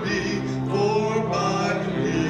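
A hymn of invitation sung with instrumental accompaniment.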